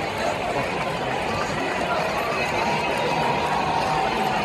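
Large crowd of people talking at once, a steady babble of many voices with no single clear speaker.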